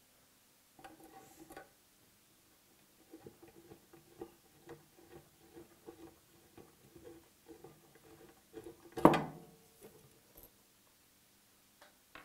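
A T-handle hex key turning screws out of a gripper's end cover makes a run of light metallic ticks and clicks. A single louder sharp knock comes about nine seconds in, as metal is set down.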